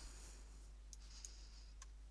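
A few faint computer mouse clicks over near-silent room tone, as a menu item is selected and a dialog box opens.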